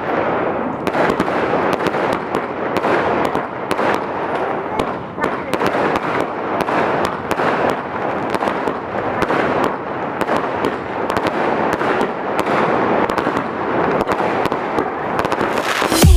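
Aerial fireworks bursting overhead in quick succession: a dense, continuous crackle of many sharp pops.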